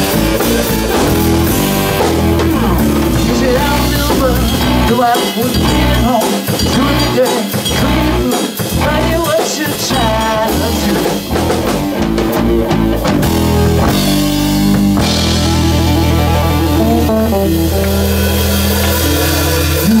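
Live blues-rock power trio playing an instrumental passage: electric guitar over bass guitar and a drum kit. The guitar bends notes through the middle, and the bass and guitar settle into a heavy repeating riff for the last few seconds.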